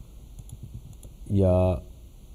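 A few faint clicks of typing on a computer keyboard in the first second.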